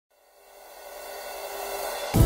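A cymbal-like shimmering swell that fades in from silence and grows steadily louder, the rising opening of an intro music track.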